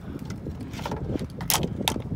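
Wind rumbling on the microphone, with two sharp clicks about a second and a half in.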